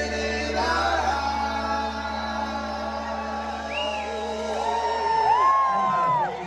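Live band music with singing, heard from inside the audience at a concert hall. In the second half, voices close by whoop and shout over the music.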